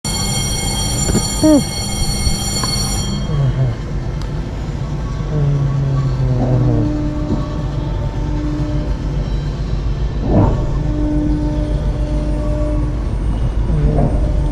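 Giant pendulum ride starting up: a steady horn-like warning tone sounds for about three seconds and cuts off abruptly, then a continuous low rumble of the ride's motion goes on, with a single knock about ten seconds in.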